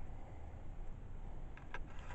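Quiet room tone with a low steady hum, and a few faint clicks near the end as the LED lamp is handled.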